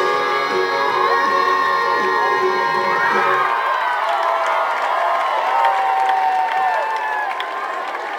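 Dance music with a steady beat, whose beat stops about three and a half seconds in, followed by a crowd cheering.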